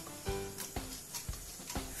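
Background music with a steady beat of about two soft taps a second under held notes.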